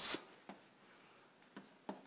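Faint scratching and a few light taps of a stylus handwriting on a tablet.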